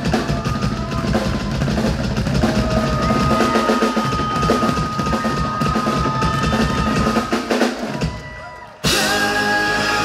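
Live rock band playing, led by a hard-driven drum kit with bass drum and snare, a long held note sitting over it in the middle. About eight seconds in the sound falls away, and a second later the whole band comes back in at once.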